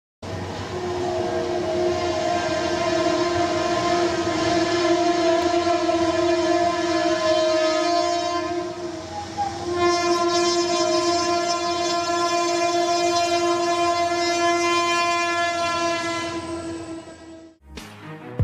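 Locomotive horn sounding two long blasts, several notes at once, with a short break between them, over a steady rushing noise; the second blast stops shortly before the end.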